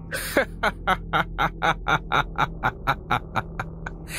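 A man's long, rhythmic laugh, a run of short 'ha' pulses about five a second lasting over three seconds.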